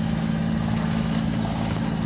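A Bavaria 36 sailing yacht's inboard diesel engine running at a steady speed, a constant low hum, with a faint wash of wind and water behind it.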